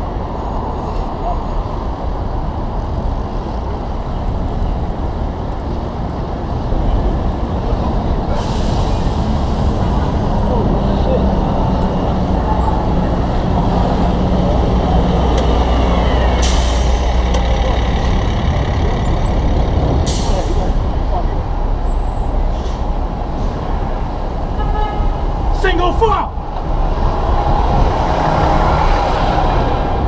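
Heavy city street traffic heard from a bicycle: bus and truck engines running close alongside, with three short hisses of air brakes.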